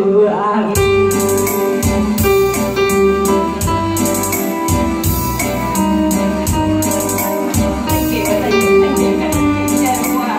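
Instrumental passage on a Yamaha keyboard: a steady drum beat and bass line under a held melody. A sung note tails off just before the beat comes in, under a second in.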